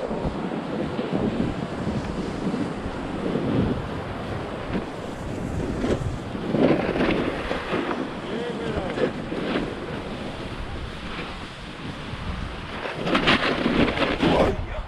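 Wind rushing over an action camera's microphone while a snowboard slides down a groomed run, the board's edges scraping on the snow in swelling waves. A louder, harsher scrape comes near the end as the board skids.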